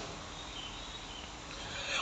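Faint, steady background hiss and room noise, with no distinct event.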